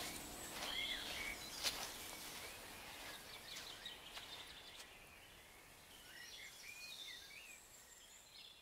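Forest ambience of birds chirping in short, curving calls, with a few sharp clicks, the loudest about two seconds in. It fades out slowly as the track ends.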